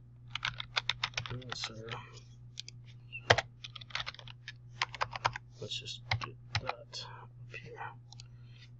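Typing on a computer keyboard: irregular runs of keystrokes, with one sharper key strike about three seconds in.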